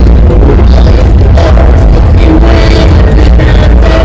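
Loud music with held notes over a heavy, continuous bass, playing over a show's sound system.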